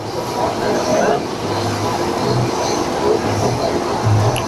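Outdoor traffic noise of vehicles running, with a faint steady hum and faint voices in the background.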